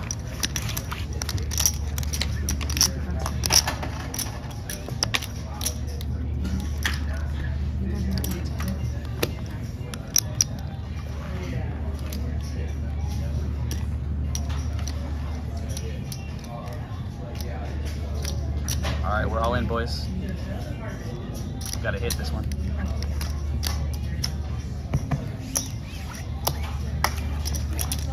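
Casino floor ambience: background music with a heavy low bass that swells and dips, faint distant voices, and frequent sharp clicks of chips and cards being handled on the table.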